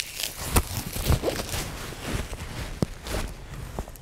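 Nylon strap of a Combat Application Tourniquet being pulled and fed through its securing clips on the upper arm: irregular rustling and scraping of webbing with a few sharp clicks.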